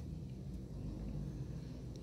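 Low, steady background rumble with no distinct sounds in it.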